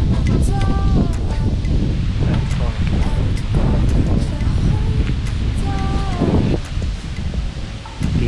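Wind rumbling on the microphone, with leaves rustling in the trees overhead.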